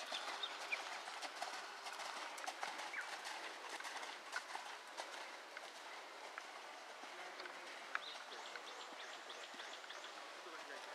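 Hoofbeats of a ridden Thoroughbred cantering on a sand arena, with birds chirping now and then.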